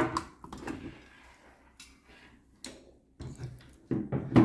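A handful of light, separate clicks and knocks from an airsoft rifle and a metal rail mount being handled and moved on a wooden table.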